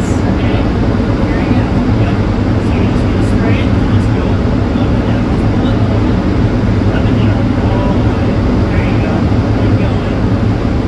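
Steady rushing roar of a powder-coating booth with an electrostatic powder gun spraying a base coat onto a hanging steel tumbler.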